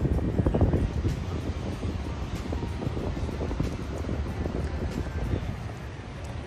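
Outdoor street ambience with wind buffeting the phone microphone as a low rumble, and music faintly in the background.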